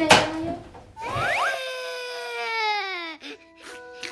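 A hinged front entrance door shutting with a thud right at the start. About a second in comes an added sound effect: a quick rising whistle, then a long tone sliding down in pitch for about two seconds, with a few soft clicks near the end.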